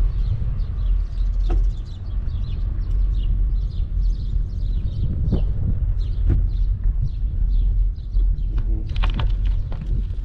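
Steady low wind rumble on the microphone of a moving bicycle, with small birds chirping repeatedly and a few sharp knocks from bumps in the road.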